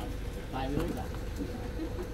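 Indistinct voices of people talking at moderate level over a faint steady hum.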